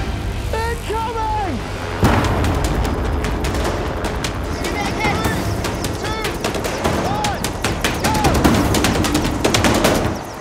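Helicopter rotor and engine noise, with the blades chopping in a rapid, even beat that gets louder about two seconds in. People shout over it.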